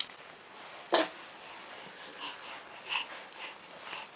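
A nine-month-old baby's short vocal sounds: one louder, sudden cry-like sound about a second in, then a string of small, quick squeaks and breaths.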